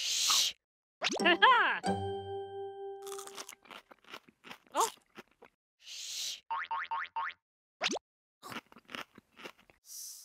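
Cartoon sound effects: crunchy bites of celery sticks being chewed, heard at the start, about six seconds in and at the end. Between them come short gliding squeaky vocal sounds and brief playful music, with a held note and a quick run of repeated notes.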